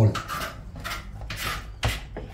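A spoon scraping around the inside of a stainless-steel saucepan as a thick honey-and-sugar turrón mixture is stirred on the hob, in short, even strokes about two or three a second.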